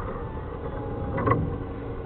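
Steady low background rumble, with a brief faint voice a little over a second in.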